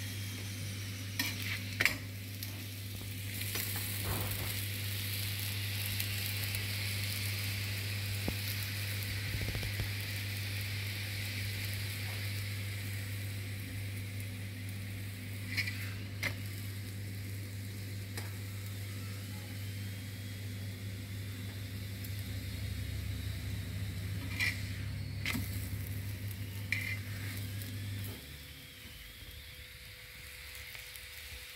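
Stuffed radish paratha sizzling as it fries on a hot iron tawa, with a few sharp metal clicks from the steel tongs as it is lifted and turned. A steady low hum runs under it and stops near the end.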